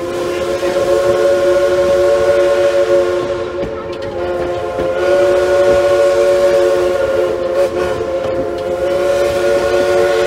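Heisler geared steam locomotive's chime whistle blowing one long, loud blast, a chord of several notes held throughout, dipping slightly about four seconds in and swelling again a second later.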